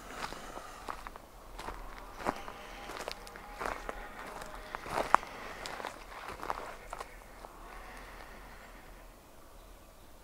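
Footsteps of a person walking on a forest trail, irregular steps that die away about seven seconds in as the walker stops.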